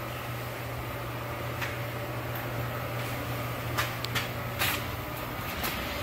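A steady low hum, like a running fan or air handler, with a few faint scattered knocks and taps.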